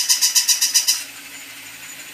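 Battery-powered walking plush toy dog's motor and gears clicking rapidly, about nine clicks a second, stopping about a second in.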